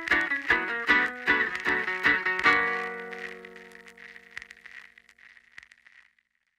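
Guitar-led rock recording reaching its end: quick picked guitar notes, then a final chord about two and a half seconds in that rings on and fades away.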